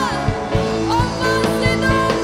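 Live praise-and-worship music: a woman and a man singing into microphones over a band, with held notes sliding between pitches and a steady beat.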